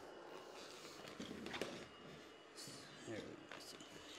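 Robot vacuum running on a rug: a faint, steady high whine over a low hiss.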